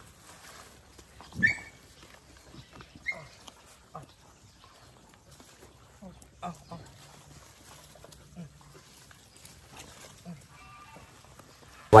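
A pack of dogs jostling around a person who is hand-feeding them, with a short, sharp yelp about a second and a half in and a smaller one near three seconds. Between these there is only faint scuffling and small scattered noises.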